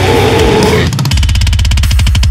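Loud deathcore metal: distorted guitars, bass and drums under a harsh vocal line for about the first second, then a tight run of rapid staccato hits, over ten a second, from about a second in.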